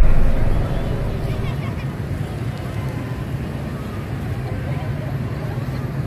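Busy street ambience: steady motorbike and car traffic noise mixed with indistinct voices, a little louder for the first half second.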